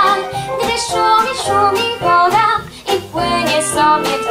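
A young girl singing a light 1930s Polish song into a microphone, accompanied by a small salon orchestra with violins. There is a short breath between phrases just before three seconds in.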